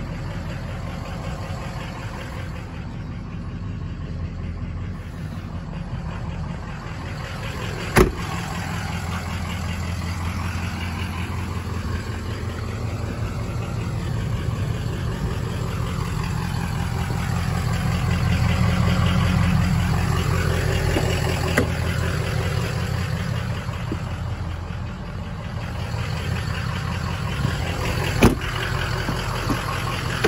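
Ford Excursion's 6.0-litre Power Stroke V8 turbodiesel idling steadily, a little louder for several seconds around the middle. Two sharp clicks are heard, one about a quarter of the way in and one near the end.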